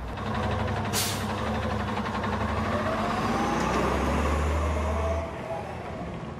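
Heavy semi-truck engine running as it drives off, with slowly rising and falling tones over a steady low drone. There is a short air-brake hiss about a second in, and the engine sound drops away a little after five seconds.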